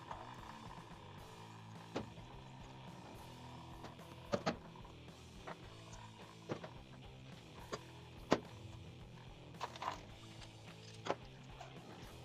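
Soft background guitar music, with scattered sharp metallic clicks and clinks as steel wrenches grip and turn a threaded metal water valve at a wall connection to unscrew it.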